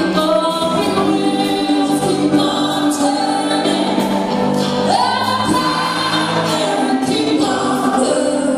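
Live band playing a song, with several voices singing together over a steady beat.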